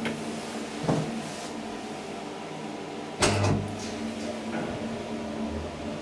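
KONE-modernized ASEA elevator: a click as the car button is pressed, a knock, then the car door shutting with a loud clatter about three seconds in. Near the end a low steady hum sets in as the machinery starts the car moving.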